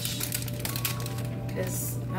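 Plastic bag crinkling in a run of quick crackles as spinach is shaken out of it, over background music.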